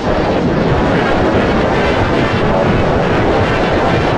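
Loud, heavily distorted electronic remix audio: a dense, steady wash of noise with no clear beat.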